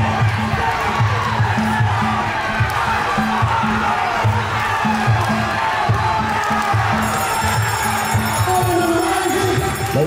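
Music with a steady bass beat, over a crowd cheering and shouting.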